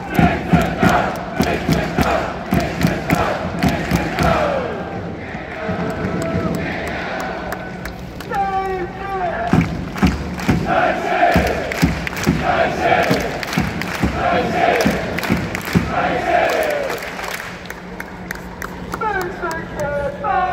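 Large crowd of football supporters chanting a player chant in unison, with sung phrases rising and falling and shouted calls. Sharp hand claps run through it.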